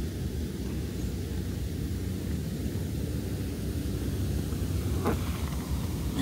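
Hot tub jets running: a steady low rumble of churning, bubbling water, with a brief faint sound near the end.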